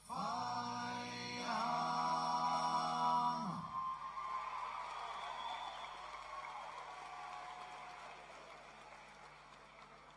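A long held chanted note, sung again about a second and a half in and ending in a falling slide near four seconds in, then a quieter tail that fades away.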